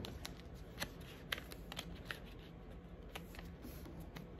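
Origami paper being folded and creased by hand against a tabletop: faint rustling with a scattering of short, crisp crackles as the folds are pressed flat.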